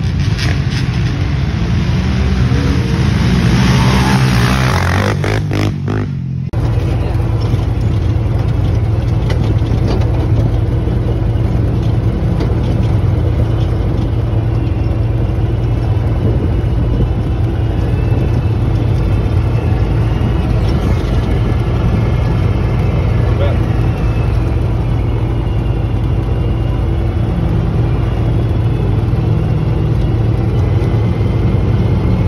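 Can-Am Maverick Sport side-by-side's V-twin engine heard from on board: it revs up with rising pitch over the first few seconds, cuts out briefly about six seconds in, then runs steadily at low cruising speed.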